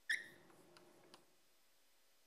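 Chalk writing on a blackboard: a sharp tap with a brief squeak as the chalk meets the board, then fainter scratching with a few light ticks, stopping after about a second.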